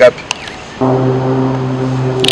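A man's voice holding a drawn-out hesitation sound, one long steady 'eeeh' at a single low pitch, starting a little under a second in, with a faint click just before.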